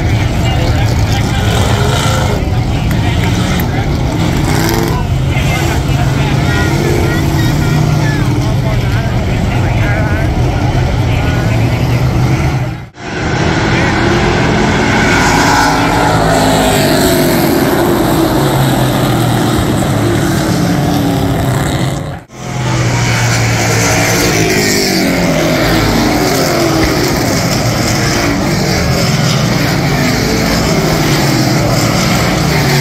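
Several race cars' engines running on a short oval track, their pitch rising and falling as cars come past. The sound drops out briefly twice, about thirteen and twenty-two seconds in.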